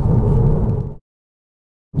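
Low rumbling road and engine noise inside the cabin of a moving 2016 Acura ILX, with its 2.4-litre inline-four. It fades out about a second in, then dead silence at an edit cut, and the rumble cuts back in near the end.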